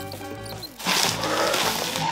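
Background music with a steady melody; about a second in, a loud rustling and crinkling of stiff, plastic-like gift-wrapping paper being handled joins it.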